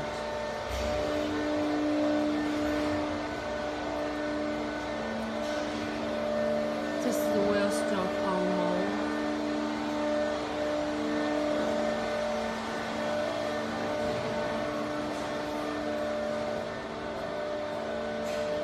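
Steady hum of injection moulding machines running in a factory hall, several tones held throughout. Voices are heard in the middle.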